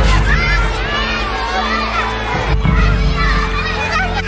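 A crowd of children shouting and calling out at play, many voices overlapping.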